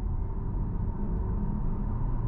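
Steady low road and tyre rumble inside the cabin of a Hyundai Tucson plug-in hybrid driving along, with a faint steady high whine above it.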